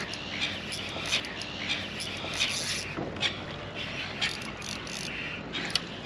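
Fishing reel being wound in against a hooked fish on a heavily bent rod, its mechanism ticking with scattered sharp clicks over a steady hiss.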